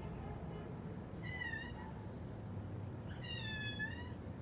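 Two short, high-pitched animal cries, the first about a second in and a second, longer one near the end, over a low steady background hum.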